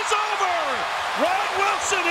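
A hockey TV commentator's raised, excited voice calling a goal, over the steady noise of an arena crowd.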